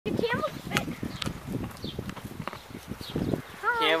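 A camel chewing grass close up: a run of irregular crunches and clicks, with a person's voice near the end.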